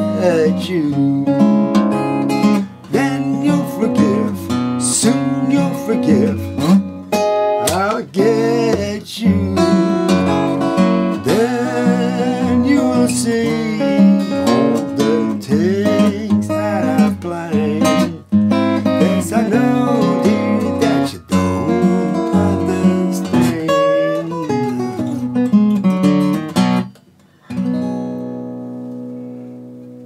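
Fingerpicked acoustic guitar, a 1986 Greven FX capoed at the second fret, playing a fingerstyle country-blues arrangement in A shapes. About three seconds before the end the picking stops on a chord that is left ringing and dies away.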